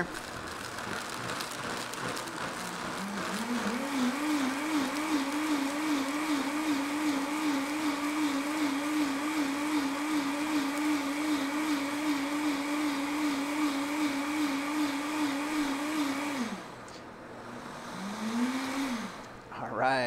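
Countertop blender motor blending pine needles in hot water. It starts on low, climbs to a higher steady speed about three seconds in, and runs with a slight regular warble until it cuts off about sixteen seconds in. A short second burst of the motor comes near the end.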